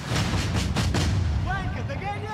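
Film trailer soundtrack: a deep booming hit over music for about the first second, then a voice near the end.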